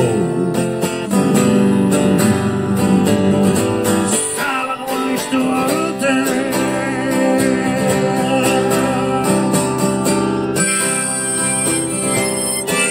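Acoustic guitar strummed in a steady rhythm, with a harmonica in a neck holder coming in near the end.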